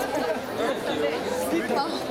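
Several people talking at once: overlapping crowd chatter with no single voice standing out.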